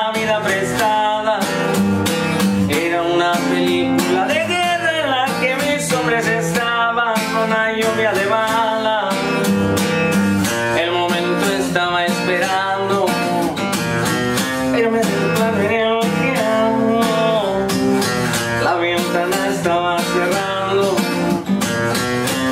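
Acoustic guitar strummed in a steady rhythm, with a man singing over it in Spanish.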